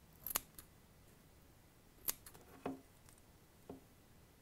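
Scissors snipping through wick to trim it: four short, sharp snips spread over the few seconds.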